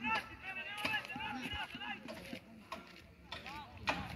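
Voices calling and shouting across an outdoor football pitch, in short scattered calls, with a few sharp knocks, the loudest near the end.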